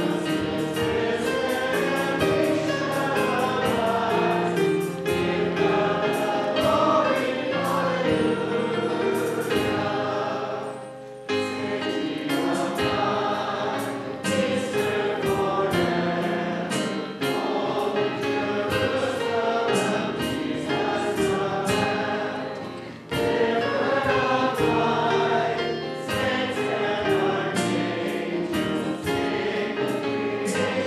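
Small mixed choir of men's and women's voices singing together, with two short breaks between phrases.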